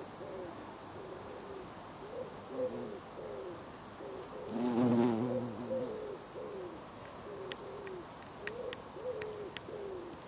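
Bumblebee buzzing close by as it forages on flowers. Its low hum keeps wavering in pitch and swells loudest about halfway through as it comes nearest.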